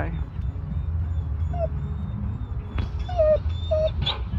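A dog whining in a few short, high whimpers: one about a second and a half in, then two or three more near the end, over a steady low rumble.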